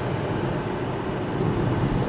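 Steady engine and road noise heard inside a Hyundai car's cabin while it is being driven.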